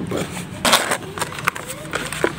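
A blue plastic tub full of dried mud handled and tipped over on gritty, sandy ground. There is a loud scrape about two-thirds of a second in, then a few short knocks and clicks.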